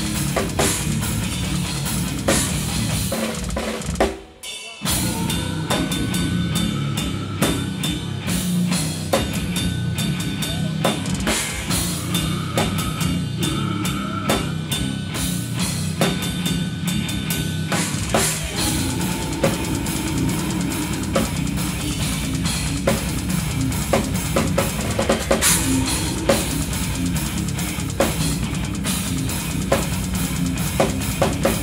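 Live metal drumming on a full drum kit: fast, dense bass drum under snare hits and crashing cymbals. The playing stops briefly about four seconds in, then comes straight back in.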